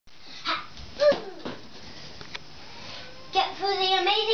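A young child's voice: a short cry about a second in, then drawn-out vocalizing from about three and a half seconds, with a few light knocks before it.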